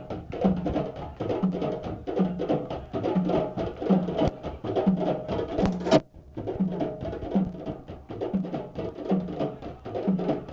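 A group of djembes played together in a steady rhythm: deep bass strokes about every three-quarters of a second under quicker, sharper tone and slap strokes. The sound cuts out for a moment about six seconds in, then the drumming carries on.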